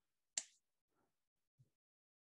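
A single short, sharp click about a third of a second in, followed by two much fainter small clicks or rustles; otherwise near silence.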